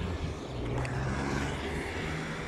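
Steady rush of wind and tyre noise from riding an electric kick scooter along a city street, with a low rumble of car traffic.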